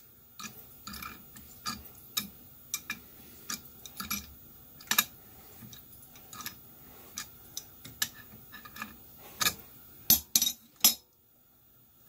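Steel adjustable wrench clinking against the square drive of a 3/8 tap as the tap is turned by hand and the wrench is repositioned for each swing: irregular light metal clicks. A few louder clanks about ten seconds in as the wrench is set down on the mill's steel table.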